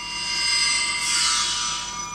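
A short musical title sting for a show segment: a shimmer of high, steady ringing tones that swells in, with a whoosh about a second in, then fades.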